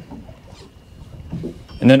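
Low, steady background noise in a pause between words, with a faint thin steady tone through the middle; a man starts speaking near the end.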